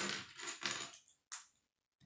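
Loose plastic K'nex pieces clattering against each other as a hand rummages through a pile of them on a wooden table, then a single sharp click a little over a second in.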